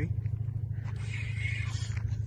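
A steady low rumble with a fast, even pulse, with a faint higher hiss about a second in.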